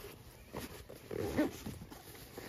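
A fabric stuff sack being pressed and rolled down on a camp cot, with rustling of the cloth; the loudest moment is a short squeak about a second and a half in.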